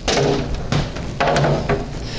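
Plastic tray of a box food dehydrator being slid out of the unit and handled. It starts with a sudden scrape, followed by a scraping rattle with a few sharp knocks.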